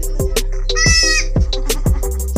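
Background hip-hop music with a steady drum beat, over which a newborn goat kid gives one short, high bleat about a second in.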